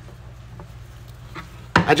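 Faint ticks and rubbing of a Phillips screwdriver turning the adjustment screw of a concealed cabinet door hinge, loosening it so the hinge draws in and lifts a sagging door, over a low steady hum. A man's voice starts near the end.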